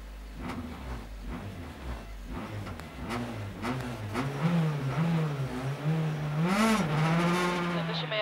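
Honda Civic Type-R R3 rally car's four-cylinder engine, heard inside the stripped cabin, blipped repeatedly and then held at steady high revs with small wobbles from about four seconds in, as it is readied to launch from a rally stage start line.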